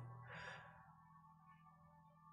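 Near silence, with a faint breath about half a second in.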